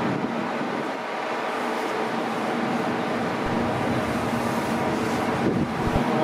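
Steady hum of a Hurtigruten coastal ship's engines and machinery under way, with wind rushing across the microphone.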